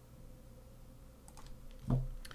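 Quiet room tone, then a few soft computer clicks near the end.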